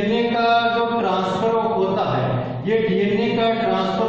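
A voice chanting in long, held notes that slide from one pitch to the next, more like sung chanting than ordinary talk.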